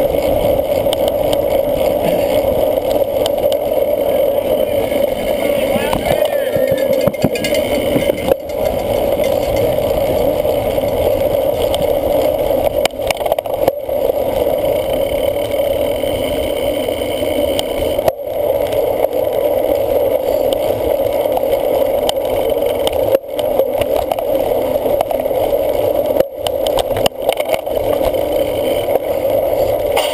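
Wind and riding noise on a racing cyclocross bike's onboard camera: a steady rushing rumble from the bike rolling fast over grass and dirt, broken by a few brief dropouts as it jolts over the ground.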